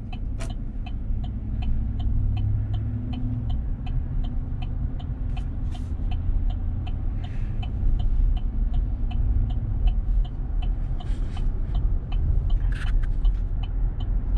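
Road and engine rumble heard from inside a moving vehicle's cabin, with a turn-signal indicator ticking evenly about three times a second. A few short rattles stand out.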